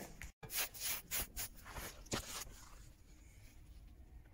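Soft knocks, clicks and scraping from a metal briquette mould being handled and a wet sawdust-and-coffee-grounds block being turned out, heard in the first two and a half seconds or so.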